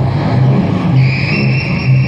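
Free-improvised ensemble music for cello, guitar, iPad electronics and amplified palette: a loud, low pulsing drone under a busy texture. A steady high tone enters about a second in and holds.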